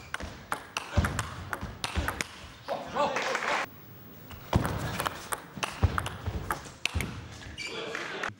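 Table tennis ball in play in two rallies: sharp clicks about two a second as the ball strikes the bats and the table, with a short break between the rallies.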